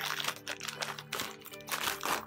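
Scissors snipping through a plastic courier mailer bag in a run of short, sharp cuts, the plastic crinkling, over steady background music.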